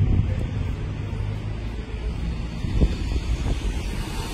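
Street ambience of road traffic: a steady low motor-vehicle hum with wind on the microphone, and a soft thump about three seconds in.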